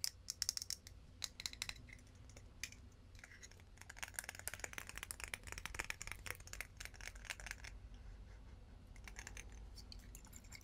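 Fingernails tapping and clicking on a glass-and-metal Calvin Klein Euphoria perfume bottle, faint: a few scattered taps in the first two seconds, then a quick, dense run of tapping from about four to eight seconds in.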